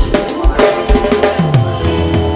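Live reggae band with the drum kit out front: regular kick and snare hits with rimshots over sliding bass notes and sustained chords, the drummer featured during the band introductions.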